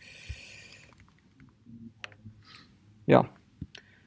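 A hiss lasting about a second, then a few scattered soft keystrokes on a laptop keyboard.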